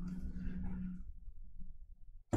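Quiet room tone with a faint low steady hum that fades out about a second in.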